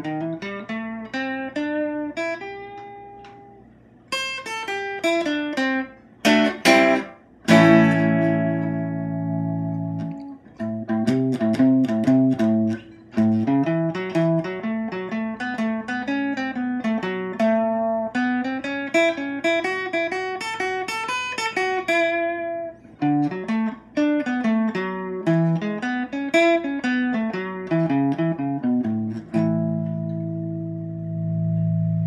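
Electric guitar played through the clean channel of a modified Jet City JCA20H all-tube amp head: picked single-note lines and arpeggios, with a full chord left ringing about a third of the way in.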